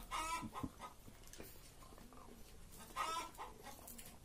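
Two faint, short chicken calls, one at the start and another about three seconds later.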